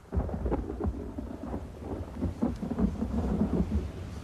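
Thunderstorm: thunder rumbling low, coming in suddenly, with rain beneath it.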